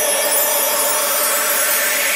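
Electronic dance music in a breakdown: the kick and bass drop out, leaving a loud hissing noise sweep over a thin sustained synth pad.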